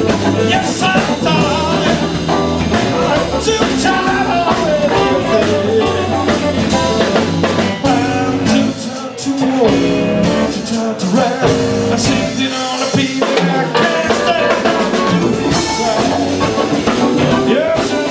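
Live blues band playing, with drum kit, electric guitar and keyboard, and a man singing. The low end drops out briefly about halfway through.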